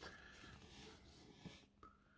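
Near silence: faint handling noise of a paper magazine, a soft click at the start and a light rustle of the pages for about a second, then a single small tick.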